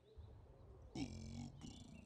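A person's wordless vocal sound about a second in, falling in pitch and held for about half a second, followed by a shorter one.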